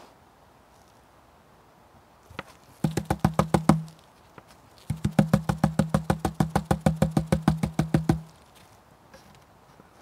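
Plastic gold pan being shaken hard in two bursts, a quick rattle of about ten knocks a second, the first about a second long and the second about three seconds, to settle the heavy black sand and gold to the bottom of the pan.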